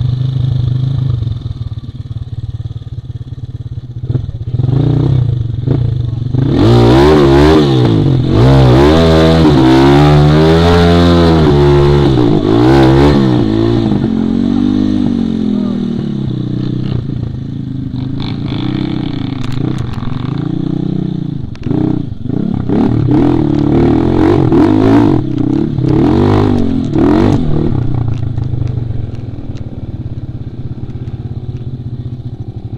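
Off-road trail motorcycle engine running low, then revved hard again and again for several seconds, its pitch swinging up and down, as the bike is worked out of a muddy rut against a tree root. It settles lower, then revs hard again near the end as the bike gets moving along the trail.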